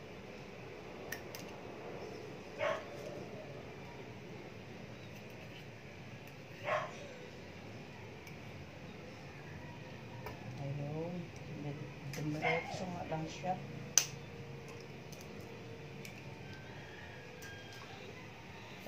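Egg yolks being separated by hand with a spoon over a stainless steel bowl: mostly quiet handling, with one sharp tap about fourteen seconds in. Two short, high calls sound in the background about three and seven seconds in.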